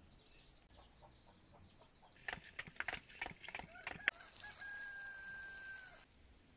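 Chickens clucking in a quick run of sharp calls, then a rooster crowing in one long held note lasting nearly two seconds.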